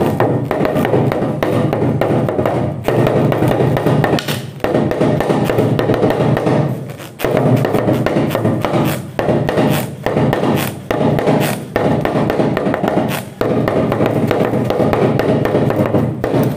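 Talking drum (West African hourglass drum) played with a curved stick in a continuous run of strokes with a few brief breaks, its pitch varied by squeezing the tension cords.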